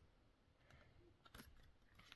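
Near silence, with faint hand handling of tarot cards and a soft click about one and a half seconds in.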